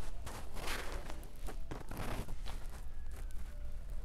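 Handling noise: irregular scratching and rubbing on a handheld phone's microphone.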